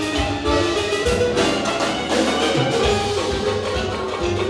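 Live band playing upbeat dance music: a melody over a steady drum beat.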